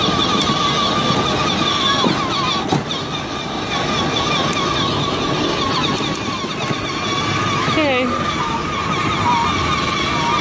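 Battery-powered ride-on toy quad driving, its electric motor and gearbox giving a steady whine that wavers slightly in pitch, over the rumble of its plastic wheels rolling on asphalt.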